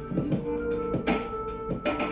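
Instrumental hip hop beat playing through a flat-screen TV's built-in speakers, heard across the room: held pitched notes over drum hits.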